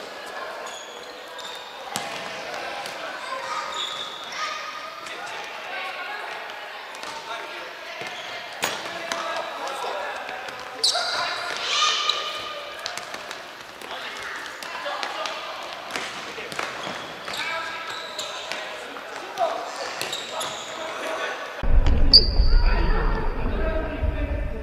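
Futsal game on a hardwood gym floor: ball kicks and bounces, short shoe squeaks and players calling out, echoing in the large hall. Near the end a steady low rumble comes in suddenly.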